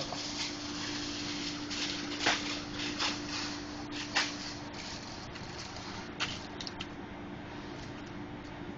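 A sheet of aluminium foil crinkling and rustling in several short, crackly bursts as it is handled and laid out, over a steady low hum.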